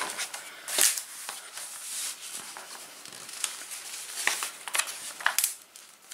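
Glossy paper pages of a trading-card game guide booklet being turned and handled, rustling and crinkling, with a louder rustle about a second in.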